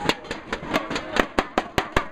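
Inflatable plastic thunderstix being banged together in a quick, even rhythm of about five sharp bangs a second.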